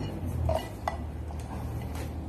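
Thin metal tin cans clinking as they are picked up and handled: a few light, sharp metallic taps.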